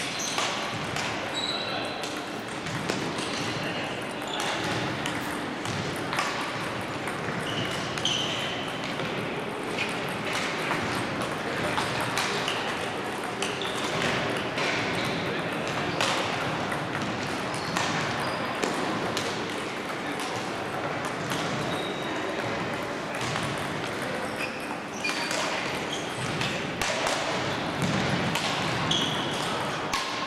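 Table tennis balls clicking off tables and bats, many scattered hits from rallies at several tables, over a steady background of voices.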